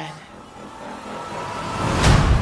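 Movie-trailer riser: a swell of noise that grows steadily louder and deeper over two seconds, building toward a boom.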